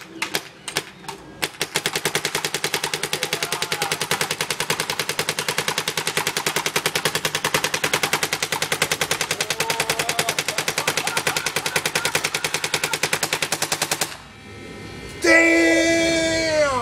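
Planet Eclipse Etek 3 electronic paintball marker firing a few single shots, then a long string of rapid, evenly spaced shots lasting about twelve seconds that cuts off suddenly. Near the end a loud cry falls in pitch.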